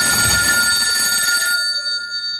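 A telephone ringing: one steady, unbroken ring.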